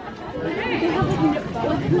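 People talking: a mix of voices and chatter from passers-by.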